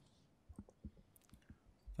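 Near silence in a small room, broken by a few faint, short clicks and light knocks scattered through the two seconds.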